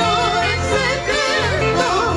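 Live Peruvian folk music: a woman singing high with a wide vibrato, backed by a band with bass guitar.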